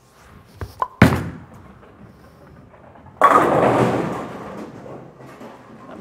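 Radical Hitter Pearl bowling ball delivered: two light taps, then a sharp thud as the ball lands on the lane about a second in. It rolls quietly for about two seconds, then crashes into the pins, and the clatter dies away over about two seconds.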